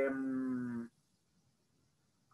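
A man's drawn-out hesitation sound, 'ehh', held on one vowel and sliding slightly down in pitch, ending about a second in; after it, only faint room tone.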